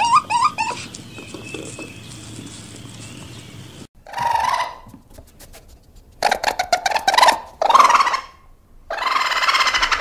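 Animal cries: quick rising chirps in the first second, then after a few seconds of low noise, three longer harsh, rattling calls.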